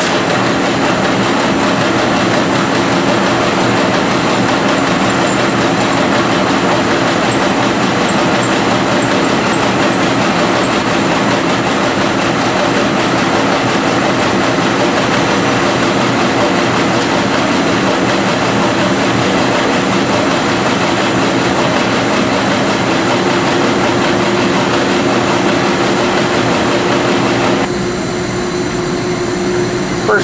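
Web printing press line with its Tamarack splicer running: a loud, steady machine noise with a low hum. It is a little quieter in the last couple of seconds.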